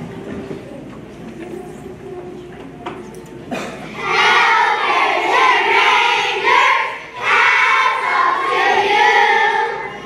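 A choir of first-grade children starts singing together about four seconds in, loud, with a brief break near the seven-second mark. Before that there is a low murmur with a few knocks.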